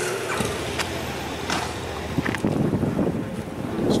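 Tour coach driving slowly through a town street: a steady engine and road rumble heard from inside, with a few light knocks.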